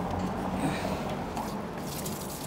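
Harvested rainwater running steadily from a tap on a storage cistern's outlet manifold.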